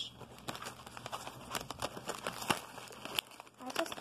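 Plastic snack-cracker bag crinkling as it is handled and crackers are taken out, a run of irregular sharp crackles.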